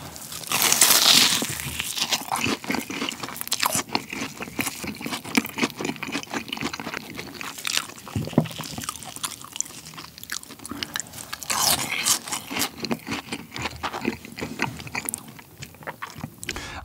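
Close-miked crunching bite into a fried cheese ball with a very crispy crust, followed by steady crunchy chewing. Another loud crunchy bite comes about twelve seconds in.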